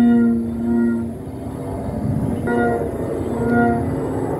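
Bell flutes (sáo chuông) on a 3.8 m Vietnamese flute kite sounding in the wind: a warm chord of steady tones that swells, fades about a second in, and comes back about two and a half seconds in.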